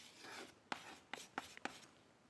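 Chalk writing on a blackboard: a few faint, short scratches and taps of chalk strokes.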